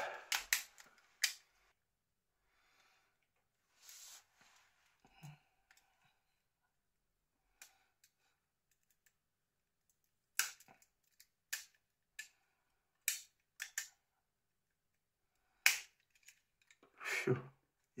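Plastic housing clips of a Nokia N80 snapping loose as the shell is pried apart with a plastic opening tool: sharp clicks, a few at the start and a quick run of them from about ten seconds in, with faint handling between.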